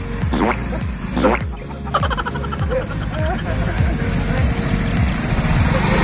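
Small motor scooter engine running at low speed over rough ground, with people calling out over it.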